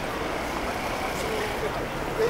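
City street crowd ambience: many passers-by talking indistinctly over a steady low rumble of traffic.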